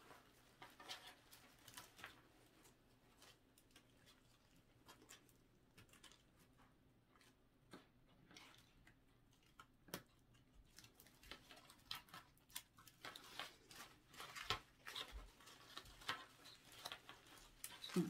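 Faint rustling and crackling of artificial leaf stems and twigs as floral stems are woven through a twig wreath form, with scattered small clicks that grow busier in the last several seconds.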